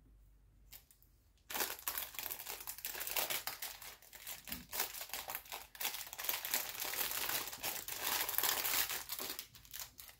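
Plastic packaging crinkling continuously as a packet is handled, starting about a second and a half in and stopping just before the end.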